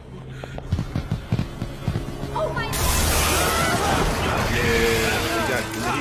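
Film soundtrack: a run of low thuds grows louder, then about three seconds in a sudden loud rush of noise breaks in, with high wavering cries over music.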